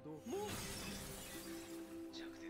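A shattering crash from the anime episode's soundtrack: a sudden burst of noise about a third of a second in that dies away over about a second, over a steady held note of background music.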